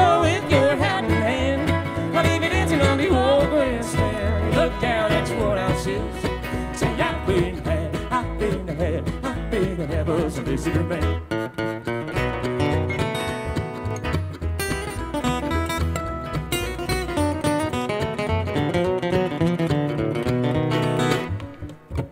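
Live acoustic bluegrass band of fiddle, acoustic guitars, mandolin and upright bass playing an instrumental break between verses, over a steady bass pulse. The lead changes about halfway through, and the music thins out near the end.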